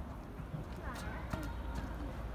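Urban street ambience: voices of passers-by talking at a distance over a steady low rumble, with a few sharp taps about a second in.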